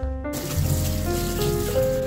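Tap water running into a stainless steel sink as dishes are washed by hand, starting a moment in, under background music of held notes.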